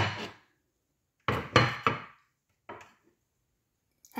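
Kitchen clatter of a stainless steel pot being handled in a sink: one sharp knock at the start, three quick knocks about a second and a half in, and a faint one near three seconds, each with a short ring.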